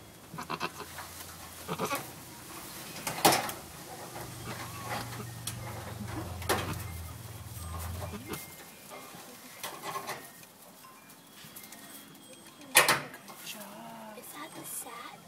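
Goat doe giving a few short calls while she tends her newborn kid in the straw, just after kidding. A steady low hum runs underneath and stops about eight seconds in.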